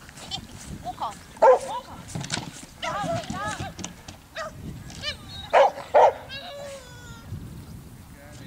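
A dog barking during an agility run: a loud bark about one and a half seconds in and two loud barks in quick succession near six seconds, with shorter pitched calls in between.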